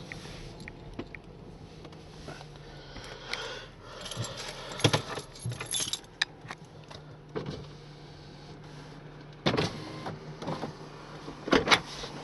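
Inside a moving car: a steady low engine and road hum, with irregular clicks and rattles through the middle and louder knocks about nine and a half seconds in and near the end.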